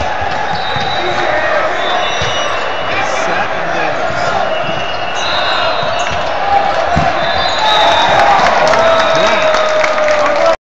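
Volleyball game in a big gym: a crowd of voices and shouts, with short high sneaker squeaks on the hardwood court throughout and a single sharp hit about seven seconds in. The crowd gets a little louder near the end.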